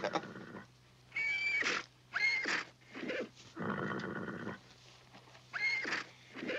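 A horse snorting, blowing hard through its nostrils twice, with short high-pitched whinnying calls in between and near the end.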